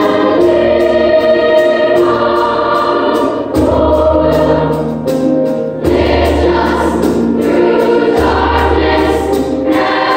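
Large children's choir singing, holding long sustained chords that change every second or two.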